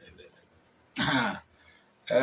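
A man clearing his throat once, a short rasping burst about a second in.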